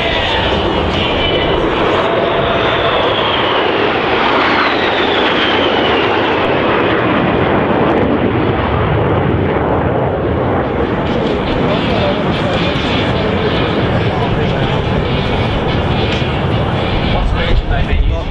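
Loud, steady jet noise from a formation of four Boeing F/A-18F Super Hornets flying past, their twin turbofans running. A falling whine comes a few seconds in as the formation passes.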